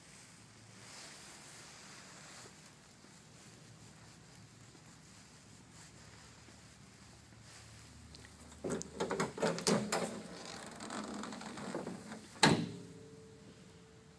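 Quiet room tone, then a cluster of clicks and knocks a little past halfway, followed by one sharp bang near the end, like a panel or latch being shut.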